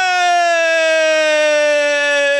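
One man's voice over a microphone holding a single long, high shouted call that sinks slowly in pitch, the drawn-out call of a religious slogan.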